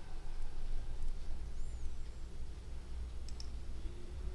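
A steady low hum with a couple of small sharp clicks about three seconds in.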